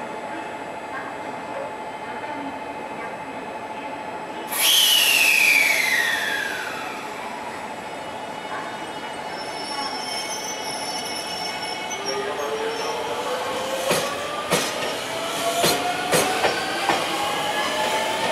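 JR Central 383 series electric train setting off. About four and a half seconds in, a sudden loud hiss comes with a whistle that falls in pitch and fades over a couple of seconds. From about twelve seconds, the motor whine rises steadily in pitch as it pulls away, with wheel clacks over rail joints coming faster near the end.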